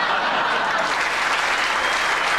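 Studio audience applauding, a dense steady clapping that stays loud throughout.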